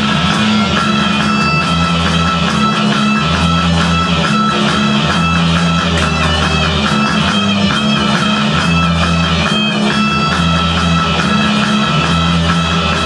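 Rock music with electric guitar over a repeating bass line of held low notes, playing steadily throughout.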